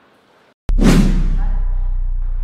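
A loud whoosh sound effect about two-thirds of a second in, opening a logo sting, over a steady low drone that carries on to the end. It follows a moment of faint hall ambience.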